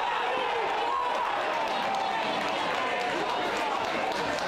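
Men's voices shouting and calling across a football pitch, over a steady background haze of open-air ground noise.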